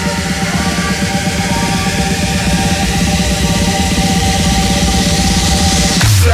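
Electronic background music with a fast, driving beat and a hissing swell that builds toward the end.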